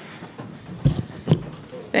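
Several people sitting down into office chairs at a meeting dais: rustling and shuffling with two sharp knocks about half a second apart, from chairs or desk microphones being bumped.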